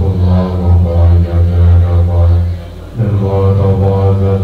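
A pair of Tibetan dungchen long horns sounding a deep, steady drone with wavering overtones above it. The drone drops away for a moment near the end, then comes back in full.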